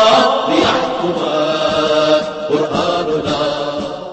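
A chorus of voices singing an Arabic protest anthem, a chanted song that trails off at the very end.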